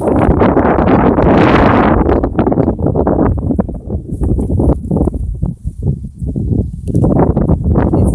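Wind buffeting the microphone: a loud, gusting rumble that eases off for a moment about five to six seconds in, then picks up again near the end.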